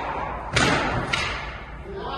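A squash ball being played in a rally: two sharp knocks of racket and ball hitting the court walls, about half a second apart, each ringing briefly in the hall.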